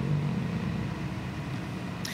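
A steady low hum of room background noise during a pause in conversation.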